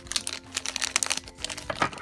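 Plastic blind bag crinkling as it is handled in the fingers, a quick irregular run of crackles.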